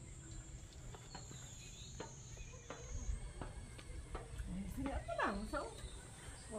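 Faint, irregular knocks of footsteps on a steel stairway, with a short voice calling out about five seconds in.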